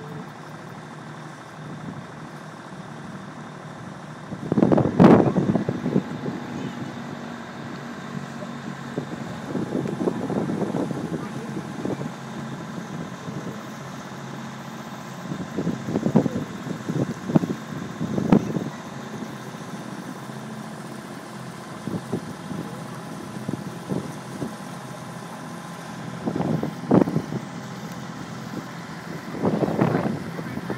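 Small motor boat's engine running steadily at low cruising speed, broken now and then by louder rough bursts.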